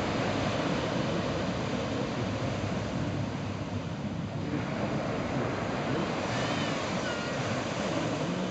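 Ocean surf washing onto the beach, a steady rush of noise, with wind buffeting the microphone.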